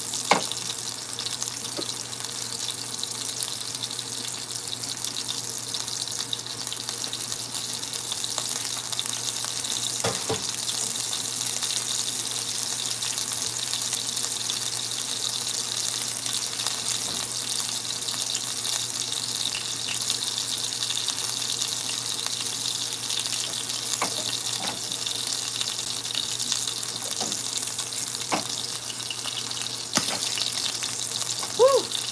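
Breaded calamari rings frying in shallow oil in a square pan: a steady, high sizzle. A few faint clicks come through it near the middle and toward the end.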